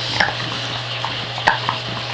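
Bulldog's mouth noises close to the microphone: wet smacking and licking with irregular sharp clicks, a few a second, over a low steady hum.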